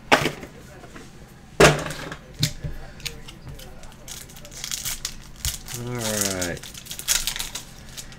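Foil trading-card pack handled and torn open, crinkling, with sharp knocks in the first two seconds, the loudest about a second and a half in. A brief voice sound comes about six seconds in.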